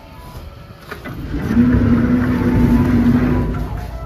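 A steady engine hum that swells up from about a second in, holds loud for about two seconds and fades near the end, like a vehicle passing close by.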